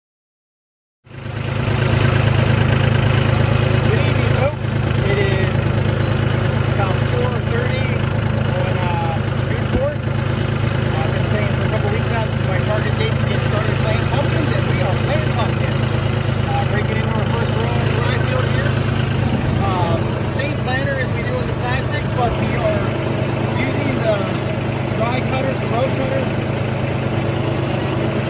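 Tractor engine running steadily as it pulls a no-till planter through rolled rye, coming in suddenly about a second in.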